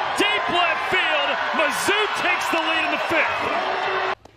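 Softball crowd cheering and shouting as a home run carries over the outfield fence, with excited voices over a steady roar. The sound cuts off abruptly just after the end.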